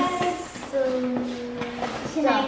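A person humming one steady, flat note for about a second.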